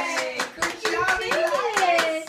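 Hands clapping in quick, repeated claps, with voices talking over them.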